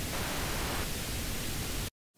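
Steady hiss of test noise playing from a Pro Tools track through its 7-band EQ plug-in, cutting off suddenly near the end.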